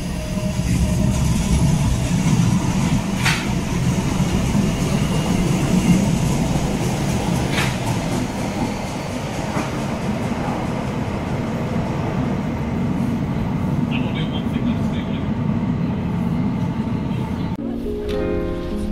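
Tyne and Wear Metrocar pulling out of an underground platform and into the tunnel: a steady low rumble from the train, with a few sharp clacks along the way. Near the end it cuts to music.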